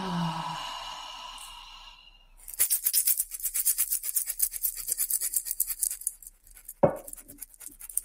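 A long breath out through the mouth fades away over the first two seconds. Then a fast, rasping shake of about ten strokes a second runs for some four seconds and stops, followed by a single knock.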